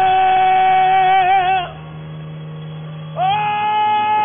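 A man's voice through a microphone holding a long high sung note that wavers at its end and stops, then sliding up into a second long held note, over a steady organ chord.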